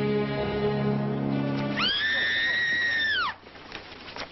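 Sad orchestral string music, then about two seconds in a woman's high, sustained scream that holds its pitch for over a second and falls away near the end.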